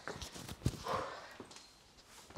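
A few soft knocks and shuffles of shoes, feet and knees on the gym floor and a padded bench as two people move into a kneeling stretch position, going quiet near the end.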